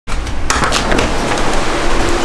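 Handling noise and a door being opened: a loud rustling hiss with a few sharp clicks and knocks in the first second.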